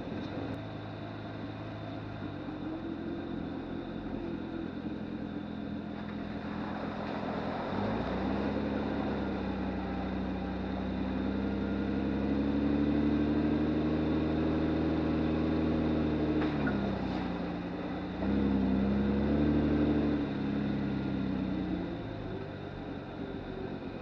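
1997 Lexus LX450's 4.5-litre inline-six engine pulling at crawling speed, its note rising about a third of the way in as the truck speeds up, holding steady, then dropping briefly and picking up again near the end.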